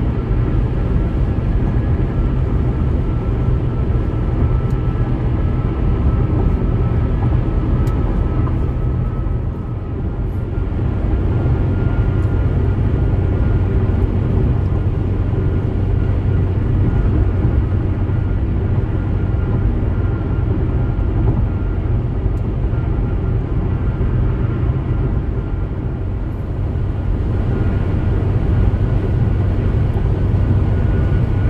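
Steady road and tyre noise of a car cruising at highway speed, heard from inside the cabin, with a deep low rumble and a faint high whine. The noise dips slightly about ten seconds in and again near the end.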